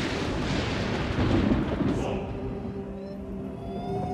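Cinematic sound effect: a deep rumbling boom with hiss that begins just before and dies away over about three seconds. Held music notes and a slowly rising tone fade in near the end.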